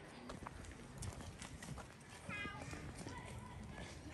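A chicken gives one short call, stepping down in pitch, about halfway through, over faint scattered clicks and scuffs.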